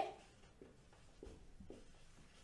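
Felt-tip marker writing on a whiteboard: a few faint short strokes as a word is written.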